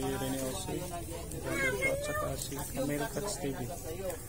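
Indistinct voices of people talking, without clear words.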